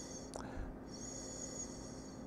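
A man sniffing red wine in a glass held to his nose: two faint, drawn-out inhalations through the nose, with a small click between them.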